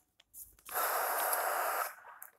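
A person breathing out close to the microphone: one steady, rushing exhale lasting a little over a second, after a soft click.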